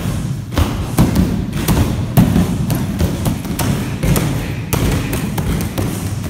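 Strikes landing on a padded kick shield: a series of dull thuds at irregular intervals, about two a second, over a steady low background sound.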